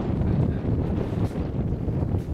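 Wind buffeting the camera microphone: a steady, loud low rumble with no distinct event standing out.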